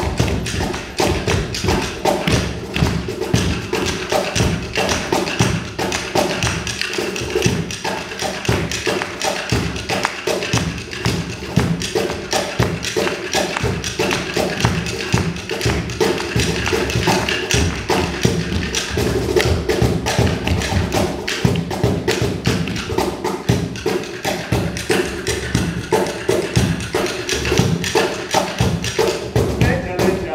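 Cajón, a wooden box drum, slapped by hand in a fast, steady rhythm of thuds and sharp taps, carrying live music for dance with a sustained pitched part underneath.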